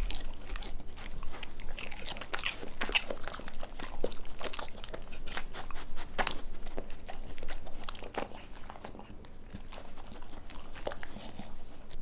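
Two dogs chewing and lip-smacking on pieces of burger patty taken from a hand, close to the microphone: a quick run of wet mouth clicks and chews that thins out about eight seconds in.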